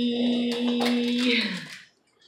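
A voice drawing out a long, sing-song "byeee" on one steady note, which drops in pitch and fades out near the end.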